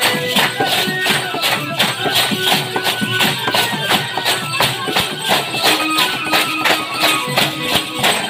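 Live Tamil folk music from a drama troupe's stage band: percussion keeping a fast, steady beat under held melody notes.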